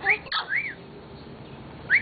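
Hill myna giving short whistled notes: a quick rising whistle and an arching one in the first second, then a pause, and another rising whistle right at the end.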